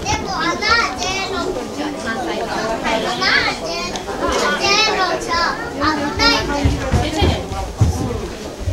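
Children chattering and calling out in high voices, with other people talking around them. A few low bumps come near the end.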